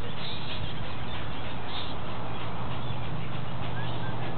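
Steady hiss and a low hum, with a few faint short bird chirps now and then.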